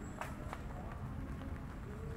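Footsteps walking on a cobblestone street over low outdoor ambience, with a couple of sharp clicks in the first half second.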